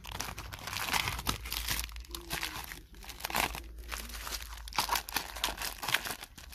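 Plastic packaging of a pack of mosaic tiles crinkling and rustling in irregular bursts as it is handled and pulled from a clear plastic display.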